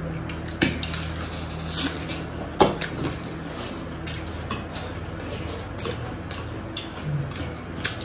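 Metal forks clinking and scraping against glass bowls while spaghetti is eaten, in scattered sharp clicks, over a steady low hum.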